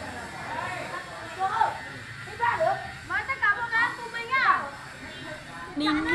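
Voices of several people talking and calling out over one another; the words are not made out.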